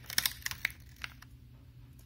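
Steel needle-nose pliers tips clicking against a circuit board as they grip and squeeze a small surface-mount capacitor: a few small, sharp clicks in the first second or so, then it goes faint.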